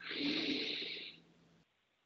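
A person's breath, one exhale of about a second that fades out, close to the microphone; then the audio drops to near silence.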